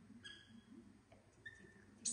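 Faint, short high-pitched squeaks from a baby monkey, twice: once shortly after the start and again about one and a half seconds in.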